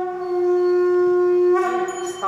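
A conch shell (shankha) blown in one long, steady note that ends about a second and a half in.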